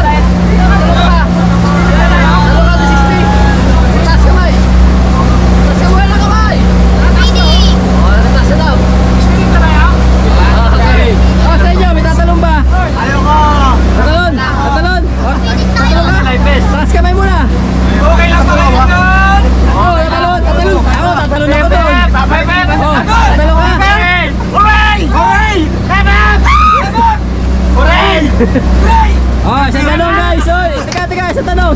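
Engine of a motorized outrigger boat running steadily under way, a constant low drone. Several passengers talk, shout and laugh over it, busier in the second half.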